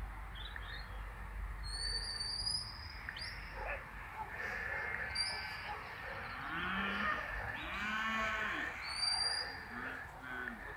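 Sheep bleating several times, mostly in the second half, with a few short high whistled notes in between.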